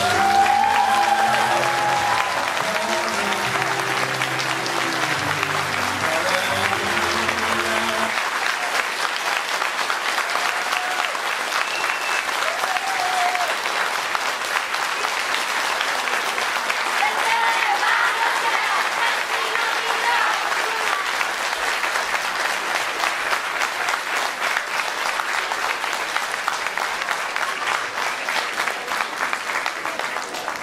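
Audience applauding steadily, with the closing music stopping about eight seconds in.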